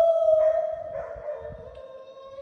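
A woman's voice singing unaccompanied: a long, loud held note that drops slightly in pitch and fades to a softer sustained tone about a second in.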